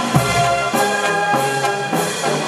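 Brass band playing: sousaphones, trumpets and trombones holding chords over a steady drum beat, a little under two strokes a second.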